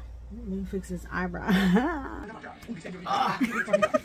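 A woman's excited, drawn-out vocalizing with chuckling, rising in pitch, over a low hum that stops about halfway through. Near the end, other voices join in, talking and laughing.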